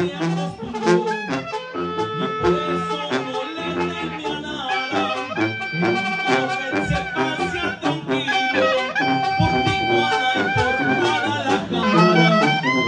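A Mexican tamborazo band playing live: brass and sousaphone carrying a melody in long held notes over a steady beat of drums and cymbals.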